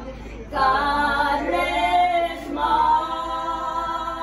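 A group of mostly women's voices singing unaccompanied in long held notes, a prayer song for the dead, with a brief breath about half a second in before the singing resumes.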